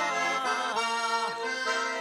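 Garmon (Russian button accordion) playing an instrumental passage of a folk song: a melody over sustained chords with a steady bellows tone.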